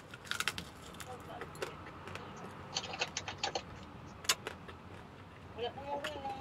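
Eating sounds: light clicks and taps of wooden chopsticks against a bowl, with a run of quick clicks about three seconds in and one sharp click a little after four seconds.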